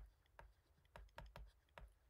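Faint, irregular light taps of a pen stylus on a tablet, about six in two seconds, as words are handwritten.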